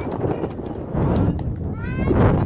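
A group of young Maasai children singing and clapping their hands; near the end a high child's voice slides sharply upward.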